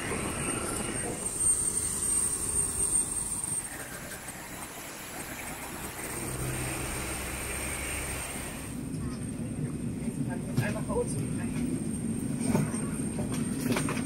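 Airport ramp ambience beside a parked jet airliner: a steady high-pitched whine over a low rumble, with voices in the background. About two-thirds of the way through the whine drops away, leaving a duller low hum with scattered clicks and voices.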